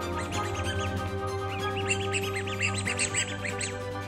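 Background music with a run of quick, high, duckling-like chirps and squeaks layered over it, thickest in the second half.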